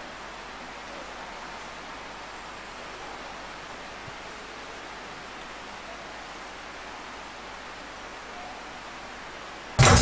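Steady low hiss of room noise with no distinct events. Music with percussion starts suddenly and loudly just before the end.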